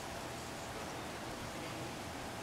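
Steady outdoor ambient noise: an even hiss with no distinct sounds standing out.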